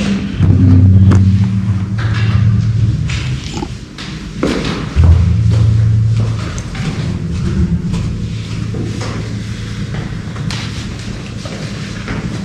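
Handling knocks and thumps from audio equipment. A loud low electrical hum cuts in suddenly about half a second in and again about five seconds in.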